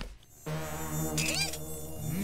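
Cartoon mosquito buzzing: a steady, low droning buzz that starts about half a second in, after a brief moment of near silence, with a short rising-and-falling squeak partway through.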